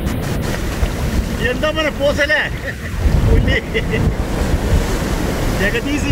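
Ocean surf washing and foaming over rocks around waders, with wind rumbling on the microphone.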